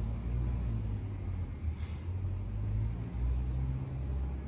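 A low, uneven rumble that swells and dips.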